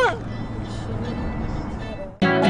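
Steady low rumble of a car's cabin noise.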